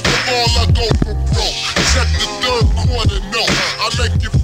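Slowed-down hip hop: pitched-down rapping over a heavy, slow bass-drum beat.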